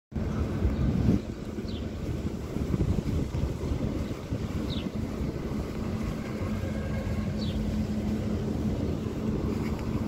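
Wind buffeting the microphone over outdoor traffic noise, with a few short, high chirps spaced a few seconds apart.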